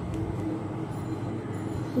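Steady low background noise with a faint hum, a continuous rumble under no clear speech.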